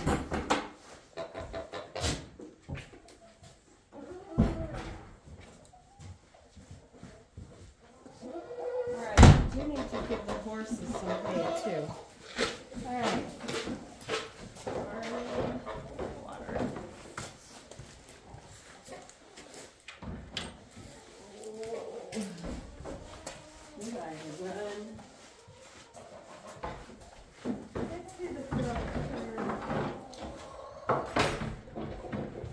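Barn chores: scattered knocks and bangs, the loudest a single bang about nine seconds in, among intermittent animal calls.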